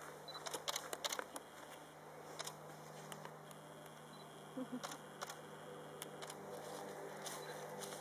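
Faint, irregular camera clicks and handling noise over a low steady hum, with no voices.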